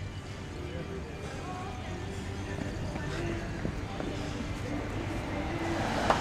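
Faint amplified music with singing carried from a distance, over a steady low rumble of street and engine noise and a murmur of voices.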